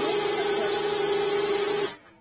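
Cordless drill spinning the cable of a RIDGID FlexShaft drain cleaner to clear a clogged drain line, running at a steady speed with a held whine, then cutting off suddenly near the end.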